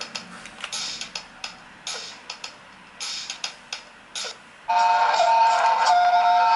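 A drum machine playing a sparse electronic beat: short hissy hits about once a second with lighter ticks between. Near the end a much louder sustained synth part comes in over it.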